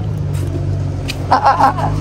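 Bus engine idling with a steady low hum.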